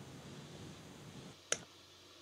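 Faint background hiss in a pause in conversation, then a single short click about one and a half seconds in, followed by a brief quiet murmur.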